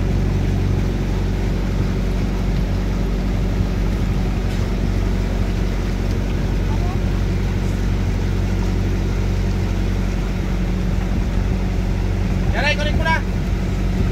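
The engine of a Philippine outrigger boat (bangka) running steadily under way, a constant low drone, with water washing along the hull and float. A voice is heard briefly near the end.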